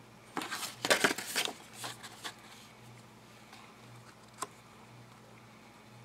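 Paper and card being handled and slid over each other on a cutting mat, with a couple of seconds of rustling near the start. A single light tap comes about four and a half seconds in.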